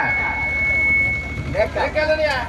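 Stage public-address sound ringing with a single thin, steady high tone for about a second and a half, over a continuous low hum; speech comes in near the end.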